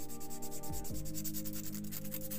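Folded sandpaper rubbed back and forth in quick, short, even strokes over a small balsa-wood lure body, a rapid scratching rhythm. Background music with steady low notes plays underneath.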